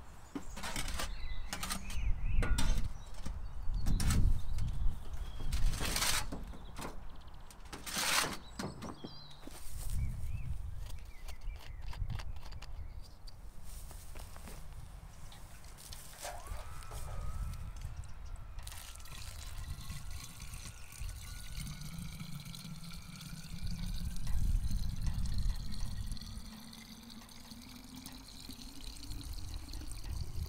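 Water poured from a watering can into a plastic bottle sunk in a potato tub, the pitch rising slowly as the bottle fills, over the second half. Before that, a run of sharp knocks and scrapes.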